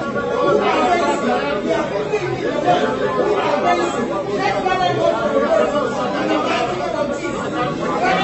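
Many voices talking over one another in a large room, a general chatter with no single clear speaker.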